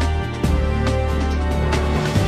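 Theme music for a TV news programme's opening titles: a held deep bass under sustained tones, with a sharp beat hit about every half second.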